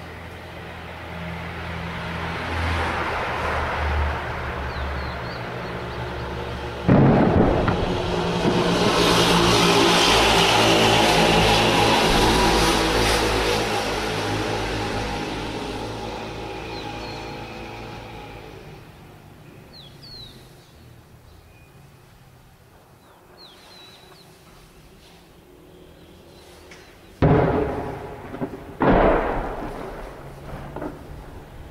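Distant tank cannon fire and shell blasts. There is a bang about seven seconds in, followed by a long rolling rumble that swells and dies away over about ten seconds. Near the end come two sharp booms about a second and a half apart.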